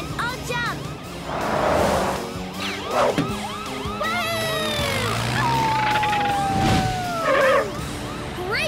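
Cartoon soundtrack: background music mixed with vehicle sound effects and many short squeaky calls that rise and fall in pitch, with a long falling tone through the second half.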